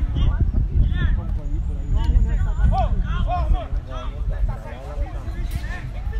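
Voices of players and coaches calling out on a football pitch, fainter than close speech, over a steady low rumble.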